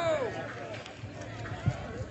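Outdoor crowd ambience with distant voices and chatter; a long shouted call trails off and falls in pitch at the start. One sharp knock sounds near the end.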